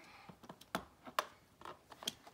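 Light clicks and taps of hard plastic as a Barbie doll and a plastic toy pool are handled: several small separate knocks spread through the two seconds.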